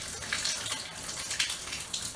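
Water dripping and splashing irregularly in a shower stall with the spray shut off.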